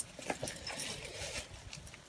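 Light, irregular taps and scuffs from a climber starting up a limestone wall: hands and climbing shoes against the rock, and the gear on his harness knocking.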